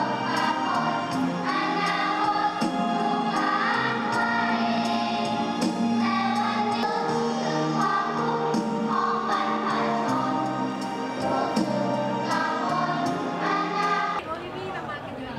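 A choir singing with instrumental accompaniment over a steady beat.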